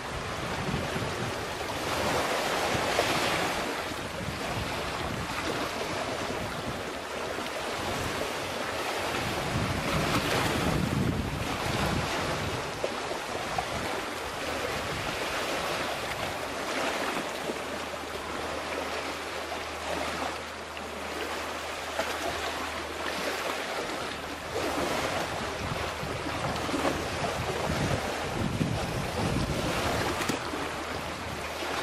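Sea waves washing on a rocky shore, swelling and ebbing every few seconds, with wind buffeting the microphone. A low steady hum comes in around the middle and carries on to near the end.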